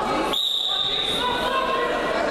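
A referee's whistle giving one long, steady blast lasting about a second, over the chatter of spectators in a large hall.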